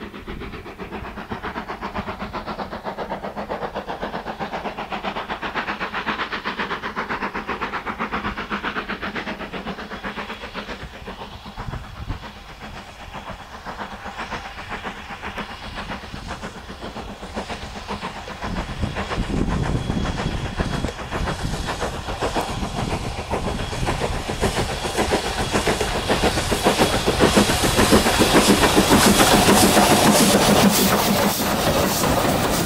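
Southern Railway U Class steam locomotive 31806 hauling a heavy six-coach train, its exhaust beating rapidly and steadily with a hiss of steam. The beats grow louder as it approaches, and near the end it passes close, with the clatter of the wheels and coaches on the rails.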